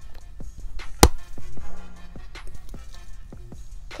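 Handling noise: one sharp knock about a second in, then lighter clicks and taps as small gear is fiddled with in the hands, over a faint low steady hum.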